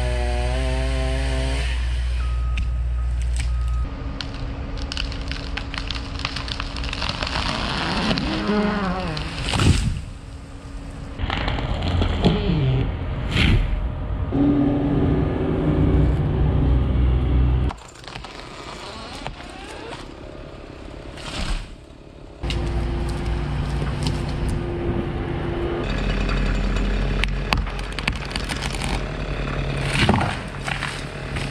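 Chainsaw cutting tree limbs and a skid-steer loader's engine running, with wood cracking, in short clips that change abruptly every few seconds.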